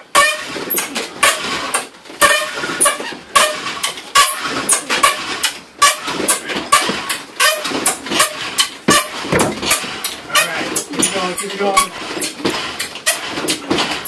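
Giant friction fire drill: a cedar fence-post spindle driven back and forth by a pulled cord, its tip squeaking and grinding against the wooden hearth in quick repeated strokes, about two a second.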